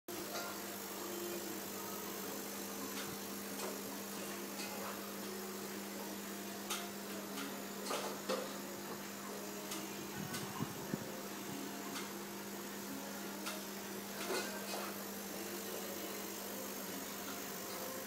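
Steady electric hum of aquarium equipment over a constant hiss, with scattered light clicks and knocks and a brief low rumble about halfway through.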